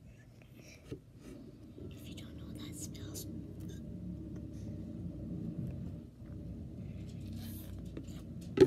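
Faint drinking sounds as a boy gulps sparkling water from a bottle held close to the microphone, with a sharp click about a second in.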